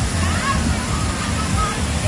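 Water pouring and splashing steadily from a water-park play structure into a pool, with the voices and shouts of people in the water over it.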